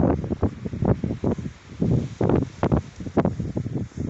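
Wind buffeting the phone's microphone in rapid, irregular gusts.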